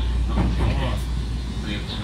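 A person's voice speaking over the steady low hum of a JR West 223 series electric train.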